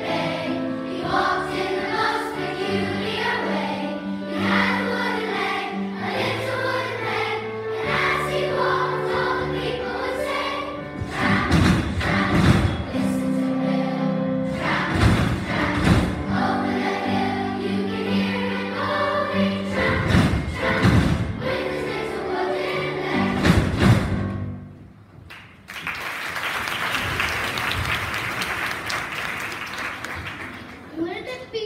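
Children's choir singing with instrumental accompaniment, with loud thumps on the beat in the second half. The song ends about 24 seconds in, and after a brief pause the audience applauds.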